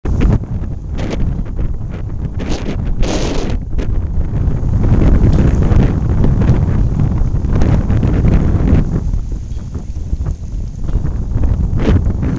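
Wind buffeting the microphone: a loud, ragged low rumble throughout, with a few brief brighter hissing bursts in the first few seconds.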